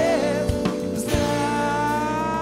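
Live rock band playing a song: drums, guitars and keyboard, with a long held note from about halfway in.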